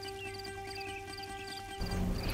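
Soft background music with held notes and a light, evenly repeating tick.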